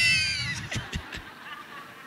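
Laughter: a high-pitched burst of laughing right at the start that falls in pitch and trails away over about a second.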